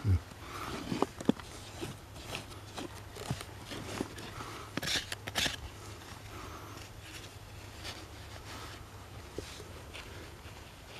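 Metal hand tool scraping, picking and prying at packed dirt and rock, in irregular clicks and short scratches, with a cluster of sharper scrapes about five seconds in. A low thump opens it, the loudest sound.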